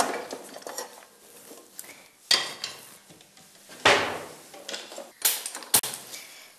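Cookware clanking as a nonstick kadai is set on a gas stove: four separate knocks, the loudest about four seconds in with a short ring.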